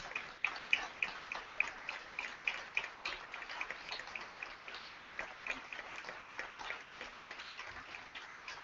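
An audience giving a standing ovation: many people clapping, the claps thinning out and fading toward the end.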